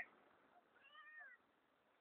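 A kitten meowing once, faintly, about a second in: one short call that rises and then falls in pitch.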